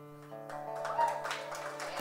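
Acoustic guitar, plugged in, ending a song: the last chord rings and fades, then a final chord is picked about half a second in and left ringing.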